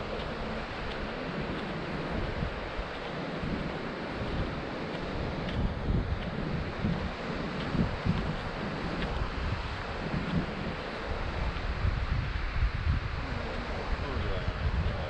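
Wind buffeting the microphone in irregular low gusts over a steady wash of ocean surf.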